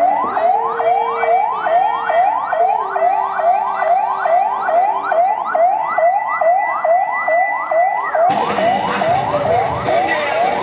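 Ambulance siren sounding a fast yelp: a rising wail that repeats about three times a second without a break. About eight seconds in, a broad rush of crowd or yard noise joins under it.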